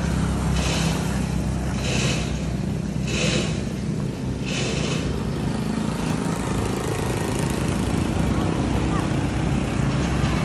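A steady low engine-like rumble, with four short hissing rustles at even intervals in the first half.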